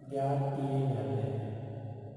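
A man's voice holding one long, drawn-out vowel at a nearly level pitch, fading away in the last half second.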